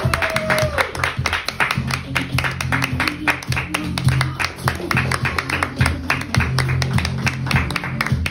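Guests clapping and applauding over played music with a steady low bass line; laughter near the start.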